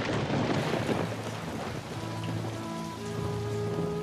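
Steady rain falling, starting suddenly and loudest in the first second, over a low drone. Soft sustained music notes come in about halfway through.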